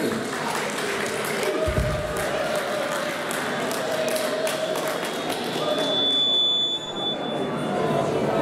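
Audience clapping and cheering, with a dull low thump about two seconds in and a short high whistle near the end.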